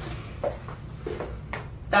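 A soft knock about half a second in, then a few fainter knocks and rustles over a steady low room hum.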